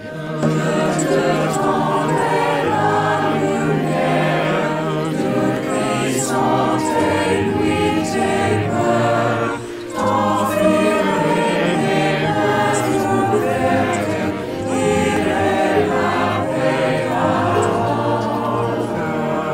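A large mixed choir of about seventy singers, recorded separately and mixed together, singing a song over an instrumental accompaniment track. There is a short break between phrases about ten seconds in.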